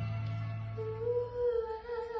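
Music: a steady low held note that stops about one and a half seconds in, overlapped by a higher wavering tone entering just under a second in.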